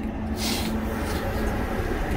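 Truck engine idling steadily, heard from inside the cab as a low hum. A short hiss comes about half a second in.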